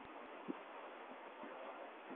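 Faint steady hiss with a few soft low knocks, the clearest about half a second in, typical of a handheld phone recording being moved about.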